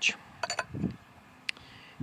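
Steel cylinder sleeve clinking against the engine block as it is set down into the bore: a few light metallic clinks with a faint ring about half a second in, then one sharp click near the end.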